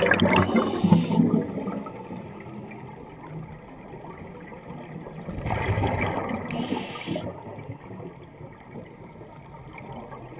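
Scuba diver's exhaled bubbles gurgling out of the regulator, heard underwater in two bursts: a loud one at the start and another about five and a half seconds in, with quieter water noise between.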